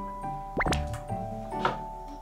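Light background music with bell-like mallet notes. About half a second in, a quick upward-swooping sound effect plays over it.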